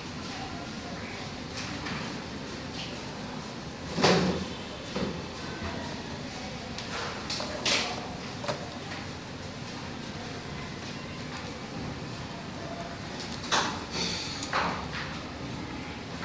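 Plastic push-button switches and wire being handled on a wooden workbench: a handful of sharp knocks and clicks, the loudest about four seconds in and a pair near the end, over a steady hiss.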